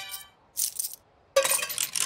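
Cartoon sound effect of tokens dropping into a coin slot, four at a time, with metallic clinking: a short clink about half a second in, then a longer clatter near the end.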